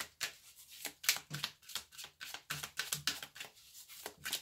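A deck of tarot cards being handled and shuffled: a run of quick, irregular clicks and flicks of card on card.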